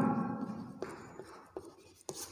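Chalk writing on a blackboard: a few faint taps and scratches as a word is chalked.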